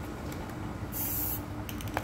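A short burst of aerosol spray paint hissing about a second in, sprayed onto the water of the dip bucket, followed by a few light clicks near the end.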